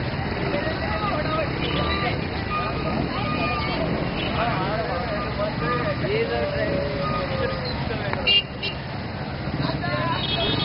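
Many motorcycle engines running together in a slow group ride, with a crowd of voices shouting over the engine rumble. There is a brief loud blast about eight seconds in.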